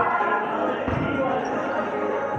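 A volleyball being struck and bouncing on a hard gym floor during a rally: a thud right at the start and a louder one about a second in, over voices in an echoing hall.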